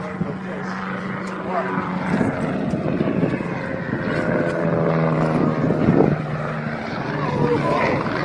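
A small display airplane's engine droning steadily as the plane descends low trailing smoke, with spectators' voices over it.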